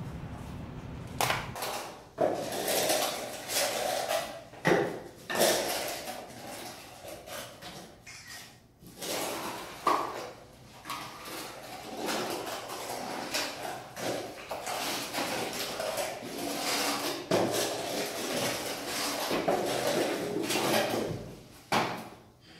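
Notched steel trowel scraping over a concrete subfloor as white flooring adhesive is spread, in irregular strokes with occasional knocks. A low hum comes first, for a second or so.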